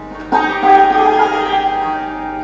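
Santoor (Kashmiri hammered dulcimer) played with a pair of light wooden mallets. A sudden loud stroke about a third of a second in sets off a louder passage of ringing, sustained notes.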